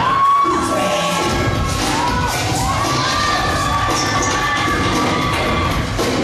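A young audience screaming and cheering, with several long, high, wavering screams over the crowd noise.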